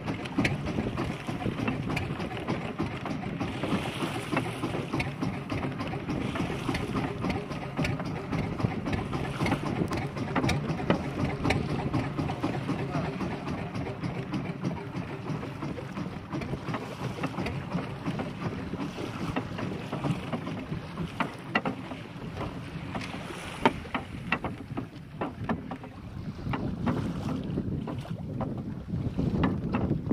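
Small boat at sea: a steady low drone with water splashing against the hull and wind buffeting the microphone.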